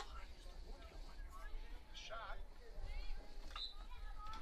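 Distant voices of field hockey players and spectators calling and shouting across the field, in short scattered bursts over a steady low rumble.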